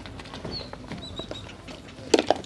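Small birds chirping: one short high chirp, then a quick run of three, over scattered scuffs and clicks of movement on the yard floor.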